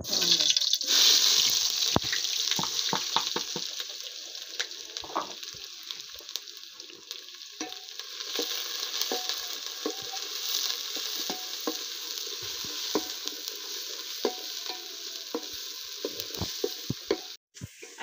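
Chopped red onion tipped into a hot metal pan, sizzling loudly at once and then frying with a steady hiss. A wooden spoon stirs it, with scattered clicks and scrapes against the pan.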